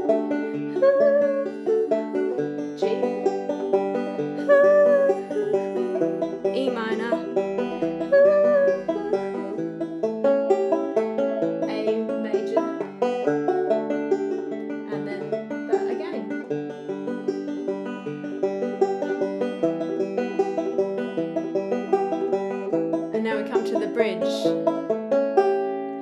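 Five-string banjo fingerpicked in a steady rolling pattern through the instrumental chord progression of D, G, E minor and A.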